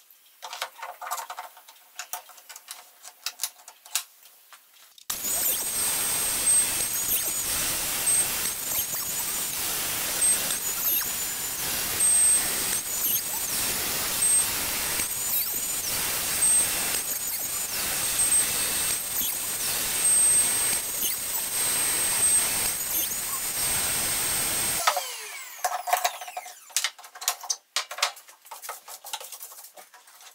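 Plunge router running at full speed, boring a bench-dog hole into the MFT tabletop through the jig: a steady high whine over the cutting noise, the level dipping briefly every second or so. It starts about five seconds in and spins down with a falling whine about five seconds before the end. Light clicks of metal bench dogs and the jig being set come before and after.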